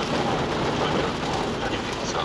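Rain on a car's windshield and roof together with tyre noise on the wet road, heard from inside the moving car as a steady rushing hiss.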